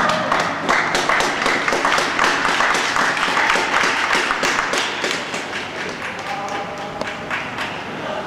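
Arena audience applauding, the clapping thinning out after about five seconds, with tango music faintly starting under it near the end.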